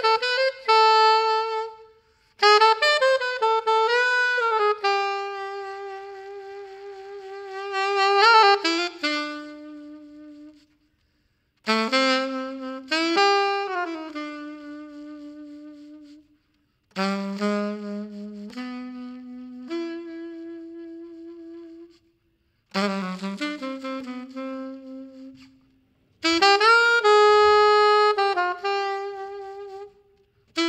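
Unaccompanied alto saxophone playing a slow, lyrical melody in separate phrases, each note dying away into a short pause before the next phrase.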